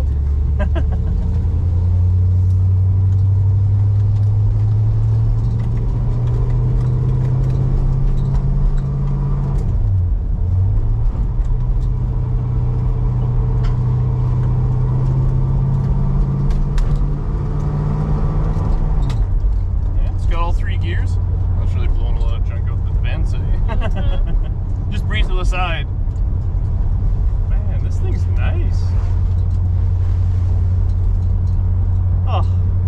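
A 1968 Plymouth Satellite's V8, heard from inside the cabin, pulls up through the gears. The engine note climbs, drops at an upshift about ten seconds in, climbs again and drops at a second upshift a little before twenty seconds, then holds steady while cruising.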